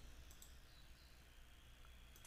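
Near silence with a faint steady low hum, broken by a couple of faint computer-mouse clicks about half a second in.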